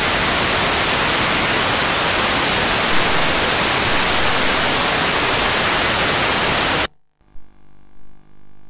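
Loud, steady static hiss from analog satellite TV audio with no signal on the channel. It cuts off abruptly about seven seconds in as a channel comes in, leaving near quiet.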